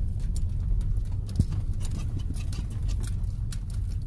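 Car rolling over a gravel drive, heard from inside the cabin: a steady low rumble with a constant crackle of small stones under the tyres, and one brief knock about a second and a half in.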